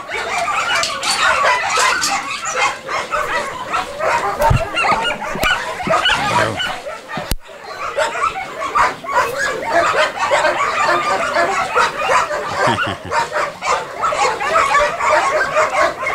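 Several dogs barking, with their barks overlapping in a busy, continuous clamour.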